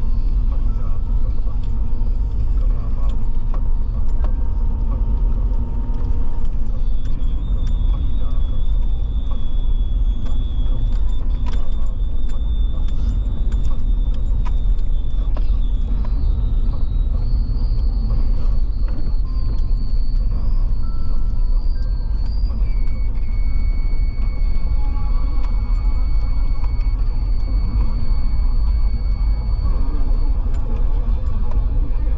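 A car driving on wet asphalt: steady low rumble of road and engine noise. Faint high-pitched whine-like tones hold for several seconds at a time, and there are a few light clicks.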